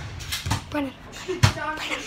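Three short thumps about half a second to a second apart, with a faint voice between them.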